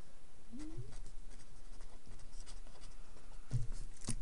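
Marker pen writing on paper, a run of short strokes as a symbol and a word are written out.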